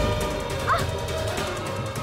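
Dramatic background music of held, sustained tones, with a brief high whimper from a woman about two-thirds of a second in.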